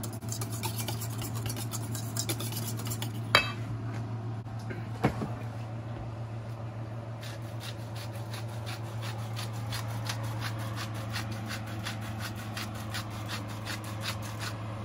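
Wire whisk clicking against a stainless steel bowl as eggs and heavy cream are beaten, with a couple of louder knocks. In the second half a salt grinder is twisted over the bowl, a fast, even run of clicks.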